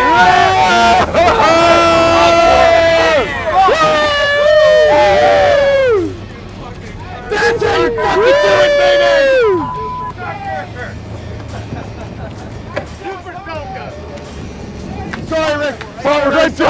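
Crew of men whooping and yelling in long, drawn-out shouts, celebrating a fish brought in. The shouts come in two bursts, and each one tails off with a falling pitch. For the last several seconds they give way to the boat's engines droning low under rushing wind and water.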